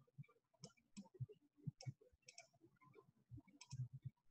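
Faint, irregular computer-mouse clicks and handling knocks, a few sharp clicks mixed with soft low thumps.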